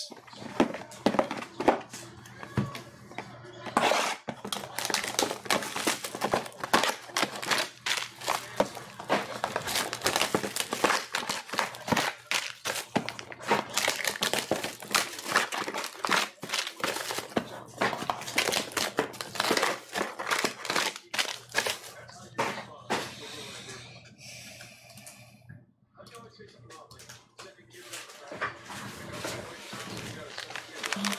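Plastic shrink-wrap on a trading card box being torn off and crumpled by hand: a dense, continuous crinkling and crackling that thins out and grows quieter for the last several seconds.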